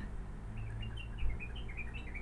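A small bird chirping: a quick run of about a dozen short, high chirps, each dipping slightly in pitch, starting about half a second in, over a faint steady low hum.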